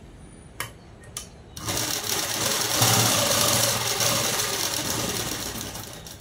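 Ruby sewing machine stitching a seam: two light clicks, then about a second and a half in the machine starts and runs steadily, easing off near the end.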